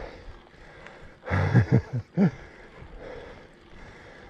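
A man's short, breathy laugh in a few quick bursts about a second in, over the faint steady noise of a bicycle being ridden.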